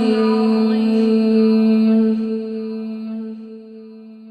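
A chanting voice holds one long, steady note of a mantra, fading away over the last two seconds.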